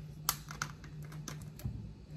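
Plastic screw cap being twisted off a plastic vodka bottle: a run of small, irregular clicks and crackles.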